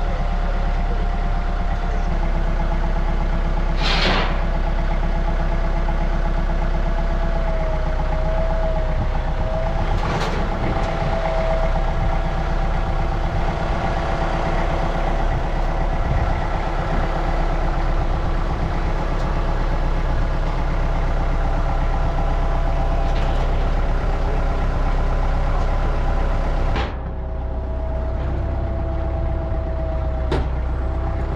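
Diesel engine idling steadily, with a few short sharp clanks over it; the sound changes abruptly and turns slightly quieter near the end.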